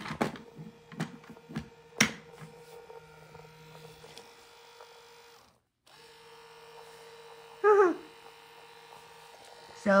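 A small battery-powered toy motor hums steadily. A few handling clicks and knocks come in the first two seconds. The hum drops out briefly at about five and a half seconds, and a short voice-like squeak comes near eight seconds.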